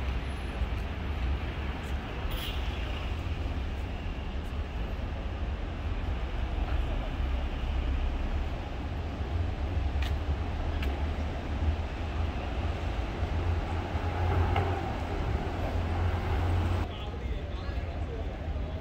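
Double-decker buses idling, a steady low rumble under background voices. The rumble drops suddenly near the end.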